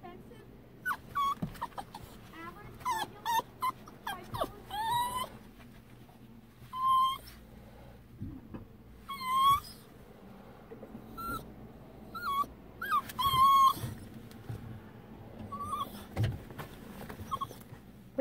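Small dog whining in a series of short, high-pitched whimpers, some bending up and down in pitch.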